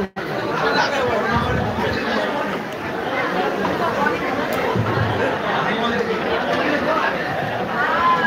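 Audience chatter: many people talking at once in a packed hall, a steady babble of overlapping voices.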